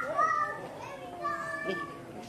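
A young child's high-pitched voice in the background, making a few drawn-out, gliding vocal sounds.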